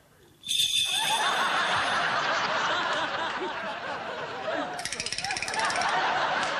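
Studio audience laughter breaking out suddenly about half a second in and carrying on. Near the end, maracas are shaken fast in a rapid rattle over the laughter.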